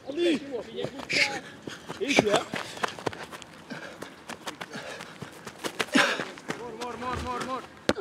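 Men's voices calling out and laughing, with a cough right at the start, over short knocks scattered throughout from players' running steps.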